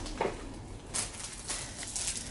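Plastic wrapping rustling and crinkling in the hands, starting about a second in, as a plastic-wrapped pill organiser is taken out.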